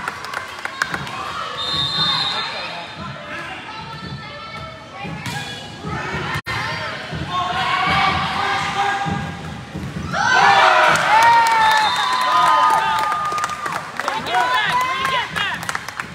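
Indoor volleyball play: the ball is struck and hits the floor with repeated sharp smacks and thumps. Players and spectators shout and cheer, loudest in a burst of shouting just past the middle.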